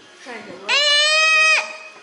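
A young child's loud, high-pitched drawn-out vocal call, rising into one steady held note for about a second, then cutting off.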